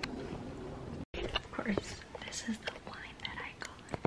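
Soft whispering voice, faint and broken up, after a sudden dropout about a second in.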